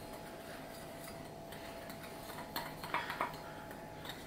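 Metal spoon stirring a dry powder mix in a glass bowl: a faint, soft scraping, with a few light taps against the glass near the end.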